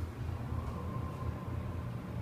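Steady low hum inside the cab of a 1990 Schindler RT hydraulic elevator riding up, with a faint thin whine in the middle.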